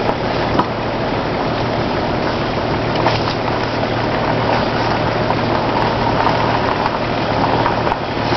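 A car driving steadily along a rough dirt track: a low, even engine hum under a loud, steady rush of tyre and road noise, with a few faint knocks from the bumpy surface.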